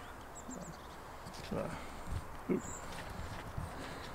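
Faint, irregular footsteps of a person walking on a path while filming.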